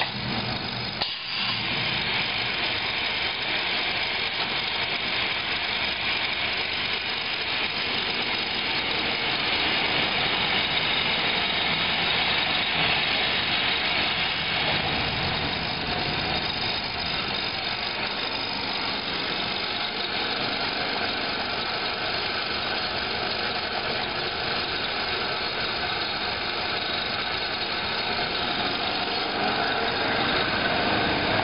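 Steady mechanical running noise of motorized roller conveyors and factory machinery in operation, an even hum and whir with no distinct strokes, briefly dropping about a second in.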